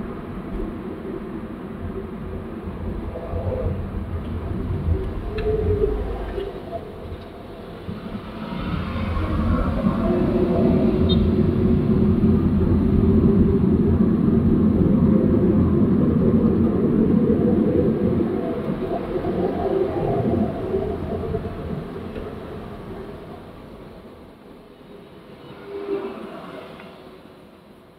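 Road and tyre noise heard from inside a car, with a heavy diesel dump truck's engine rumble swelling as the truck runs alongside, loudest for about ten seconds in the middle, then fading.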